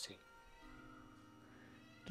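Near silence: room tone, with a faint steady low tone from about half a second in.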